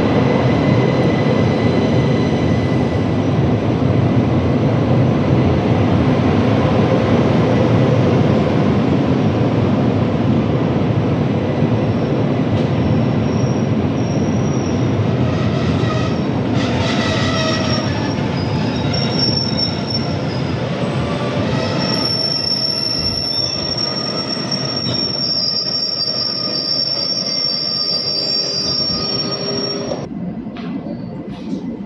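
Rhaetian Railway train with panoramic cars rolling past along the platform, a steady loud rumble of wheels on rails. Thin, high-pitched wheel squeals come in from about halfway and grow stronger near the end.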